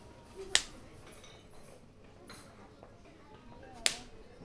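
Two sharp finger snaps about three seconds apart, the first about half a second in and the second near the end.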